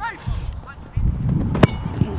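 A football struck full-power with the instep in a 'sledgehammer' shot: one sharp, loud thud of boot on ball near the end.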